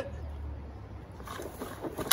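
Push-type broadcast spreader rolling over lawn grass: first a low rumble, then from about a second in a faint rattling hiss from its wheels and spinner.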